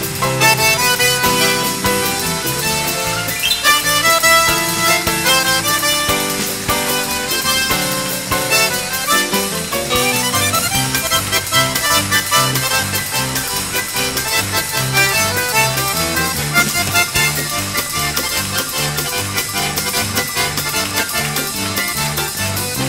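Instrumental passage from a live chanson band with no singing: quick melodic runs over accompaniment, with a bass line stepping in even beats from about nine seconds in.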